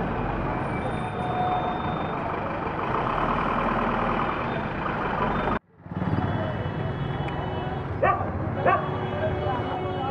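Outdoor background noise, a steady mix of traffic and indistinct voices, cut off briefly by a dropout about halfway through. After the dropout there are faint steady high tones and a couple of short, sharp sounds.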